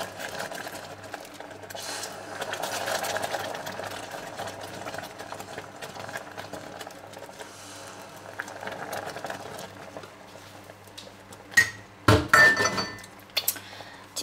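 Caramel bubbling in a stainless steel saucepan as hot cream is poured in and stirred with a spatula, over a steady low electric hum. Near the end come a few sharp knocks and clinks of utensils against the pot.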